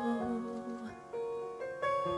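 A held sung note dies away at the start, then a piano plays a few soft, separate notes one after another.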